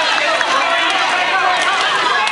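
Many voices shouting and calling over one another at once, a steady loud din with no single clear speaker.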